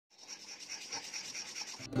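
A fingertip rubbing quickly back and forth over a rough perforated disc, a scratchy rasp repeating about five times a second. Music begins at the very end.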